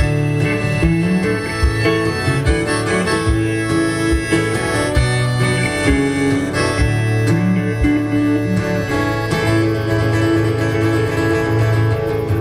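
Acoustic guitar and electric guitar playing an instrumental passage together live, with a soft low thump on the beat.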